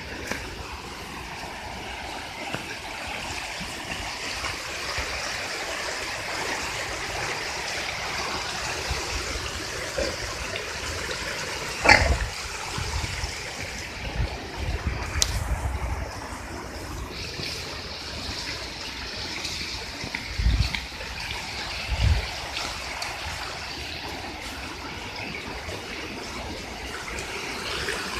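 Small shallow creek running over stones: a steady rush of flowing water. A few dull low thumps break in, the loudest about twelve seconds in.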